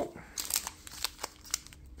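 Foil trading-card booster pack being picked up and handled, giving a run of short crinkles and clicks for about a second.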